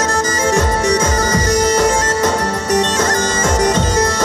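Folk-style music: a reedy wind instrument plays a melody over a held drone, with deep drumbeats throughout.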